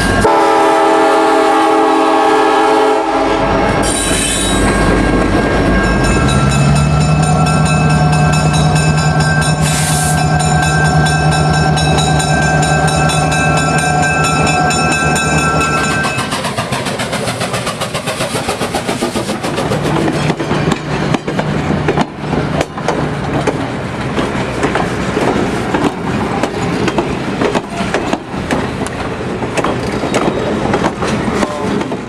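Train sounds: a horn and a steady locomotive drone through the first half, then from about halfway an even clickety-clack of wheels passing over rail joints.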